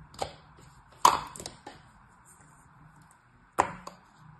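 Kinetic-sand moulds being set down and knocked against a table: a few sharp knocks, the loudest about a second in and another near the end.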